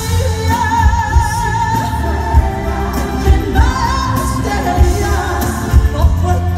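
A female singer performing live with her band: she holds long sung notes with a wide vibrato over a heavy bass, amplified through the concert PA.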